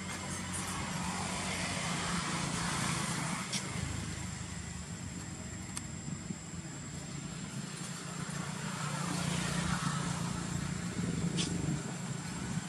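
A motor vehicle engine running with a steady low hum, growing louder twice, about two seconds in and again near ten seconds, with a few faint clicks.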